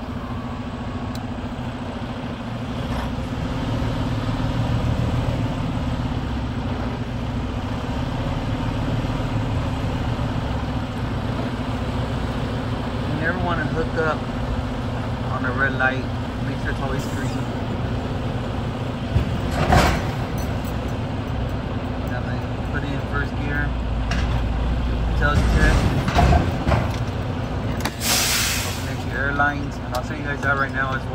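Semi-truck diesel engine running steadily as the tractor backs under a trailer to couple, with a sharp knock about twenty seconds in and a burst of air hiss near the end.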